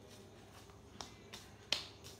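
Three short, sharp clicks about a third of a second apart, the last loudest, over a faint steady hum.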